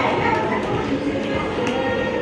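Indistinct voices with music playing behind them.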